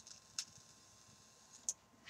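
Quiet room with three faint, short clicks: one at the start, one about half a second in, and one near the end.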